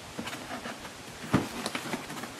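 Cardboard model-kit box lid being handled and pried at as it is worked open: faint rubbing and scraping with small clicks, and one sharper knock about a second and a half in.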